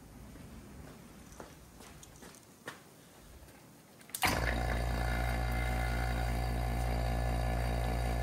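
Electric bench vacuum pump switched on about four seconds in, then running with a steady hum, pulling vacuum to leak-test a 4L60E transmission valve body's valve bores. Before it starts, only a few faint clicks of handling.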